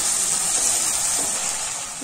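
Chopped tomatoes and onions sizzling in hot oil in a nonstick pan: a steady, high hiss that eases off slightly near the end.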